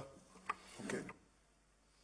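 A single faint click about half a second in, then a brief soft rustle, then near silence as room tone.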